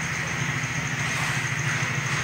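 A steady low engine-like drone with a fast, even pulse, like a small motor idling in the background.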